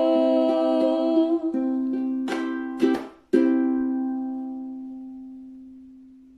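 The end of a song on a strummed string instrument: a held chord, a few quick strums about two to three seconds in, then a final chord left ringing and slowly fading away.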